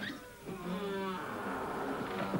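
A long, slightly wavering cry, held for about a second and a half.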